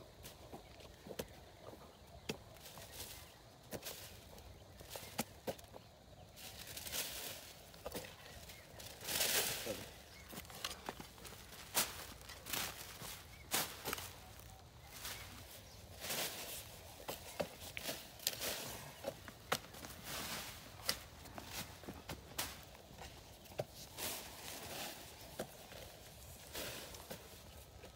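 Long-handled hoe chopping and scraping dry, clumpy soil, with clods dropping onto plastic mulch film, in irregular knocks and scuffs, and footsteps on the dirt. The soil is being heaped along the film's edges to hold the sheet down. A longer, louder rustling scrape comes about nine seconds in.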